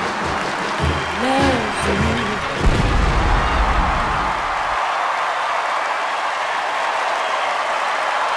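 A sung pop song plays for about two seconds and ends on a heavy low final hit, then a large audience applauds and cheers steadily for the rest of the time.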